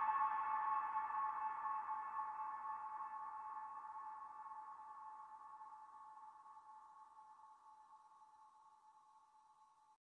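A single held electronic synth tone, the last sound of a hyperpop track, ringing on and fading out slowly and evenly until it is almost gone.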